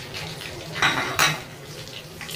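A whole chicken deep-frying in oil, the oil bubbling and crackling steadily. About a second in there are two louder sharp spits, a third of a second apart.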